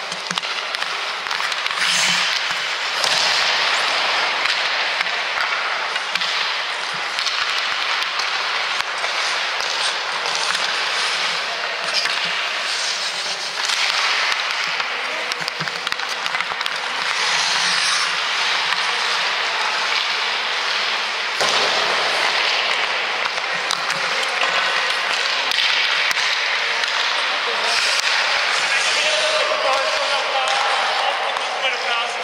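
Ice hockey shooting practice: sharp knocks of a stick on a puck and of pucks striking the goalie's pads and the boards, scattered over a steady loud hiss.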